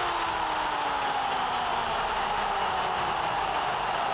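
A football commentator's drawn-out goal cry, one long held note sliding slowly down in pitch and fading just before the end, over stadium crowd noise.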